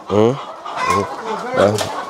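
A flock of chickens clucking and calling as they crowd around feed being handed out from a bucket, several short calls overlapping.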